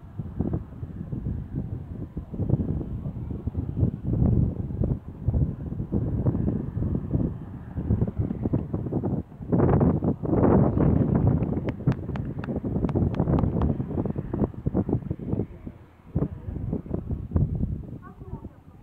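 Wind buffeting a phone microphone in uneven gusts, with a louder surge about halfway through. Just after it comes a short run of quick, sharp clicks.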